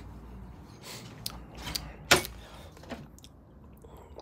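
A few light clicks and knocks, the sharpest about two seconds in.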